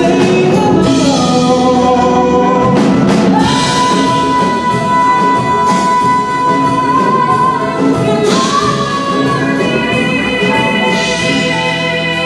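A young woman singing a show tune over instrumental accompaniment. In the middle she holds one long high note, and near the end a note wavers with vibrato.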